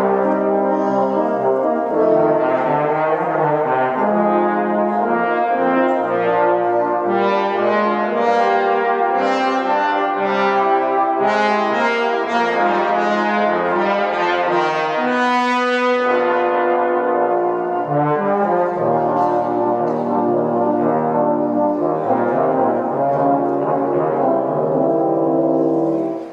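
A trombone quintet playing a jazz-style piece in close harmony, several sustained voices moving together in chords. The sound grows brighter through the middle, then eases after a brief break in the lower parts about two-thirds of the way through.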